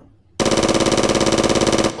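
Burst of rapid machine-gun fire, about a second and a half long, starting about half a second in and cutting off suddenly.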